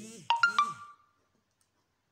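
WhatsApp message notification tone: a short electronic chime of three quick notes, the last ringing on briefly.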